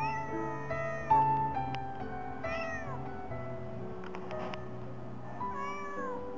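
A young tabby kitten meowing three times: short calls that rise and fall in pitch, at the start, halfway through, and near the end. Piano music plays steadily under them.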